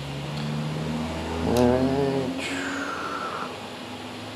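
Creality Ender 3 Pro stepper motors humming as the printer homes its axes with the BLTouch probe. A click about one and a half seconds in, a louder wavering whine, then a whine that falls in pitch as a motor slows.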